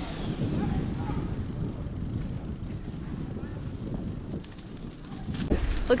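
Wind buffeting the microphone of a camera riding along on a moving bicycle: a steady low rumble, with a single low thump near the end.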